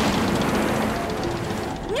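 Cartoon submarine sound effect: a steady, loud rumbling whoosh as the little sub dives into the deep.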